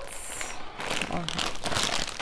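Crinkling and crackling of a plastic snack bag of popcorn being picked up and handled, a quick run of small crackles.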